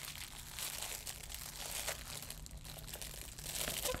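Plastic packaging crinkling irregularly as a pacifier is worked out of it by hand.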